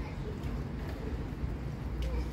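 Faint voices over a steady low rumble.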